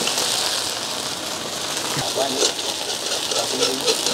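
Bánh xèo batter frying in hot oil in a wok over a gas burner: a steady, high sizzling hiss.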